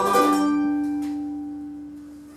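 Ukuleles ringing out on a song's final chord and fading away, one note holding longest as the others die.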